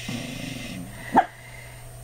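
A dog making a low grumbling sound, then barking once, short and sharp, just over a second in.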